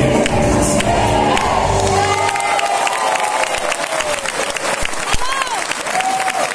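Music for the show's final number stops about two seconds in, and the crowd carries on clapping and cheering, with shouts rising and falling above the applause.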